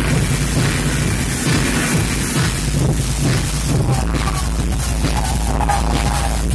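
Hard techno played loud over a club sound system, with a heavy pounding bass; about four seconds in the bass changes to a deep, steady low drone.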